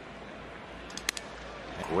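Ballpark crowd noise, with a brief sharp crack about a second in as a wooden bat shatters on contact with the pitch.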